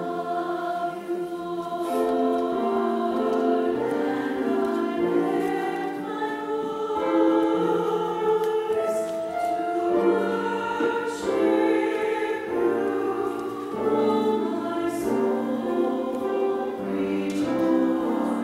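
Mixed church choir of men and women singing in several parts at once, with notes held and shifting throughout.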